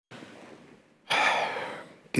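A man's loud, quick intake of breath into a microphone about halfway through, over faint room noise, taken just before he starts to speak.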